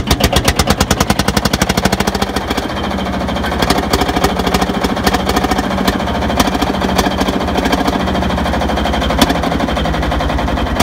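Field Marshall tractor's single-cylinder two-stroke diesel running just after a cartridge start, with rapid, even firing beats that are sharpest for the first couple of seconds, then settle into a steadier idle.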